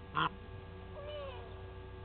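Birds calling: one short, loud call just after the start, then faint chirps about a second in, over a steady electrical hum.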